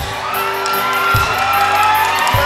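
Live country band music with a bass drum beat about once a second and a long, slowly rising high note held over it.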